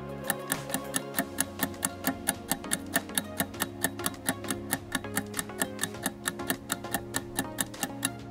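Clock-ticking sound effect marking an eight-second quiz countdown: rapid, evenly spaced ticks, about four to five a second, over steady background music.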